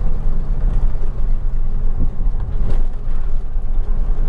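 Steady low drone of a truck's engine and tyres on the road, heard from inside the cab while driving, with a couple of faint knocks about halfway through.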